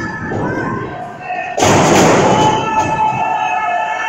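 A wrestler's body slammed onto the wrestling ring about one and a half seconds in: one loud thud that rings on briefly. Shouting and cheering from the crowd go on throughout.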